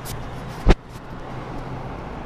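A single sharp knock about two-thirds of a second in, over a steady low hum.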